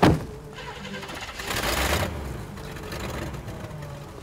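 A car door shutting with one heavy thunk, followed about a second and a half later by a brief rushing noise.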